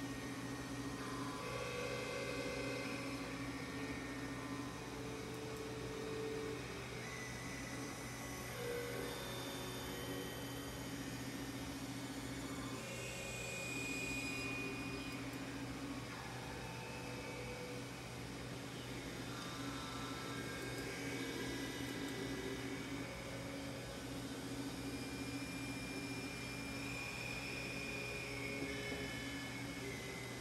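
Synthesizer drone: several sustained tones held together, with notes entering and dropping out every second or two over a steady low hum.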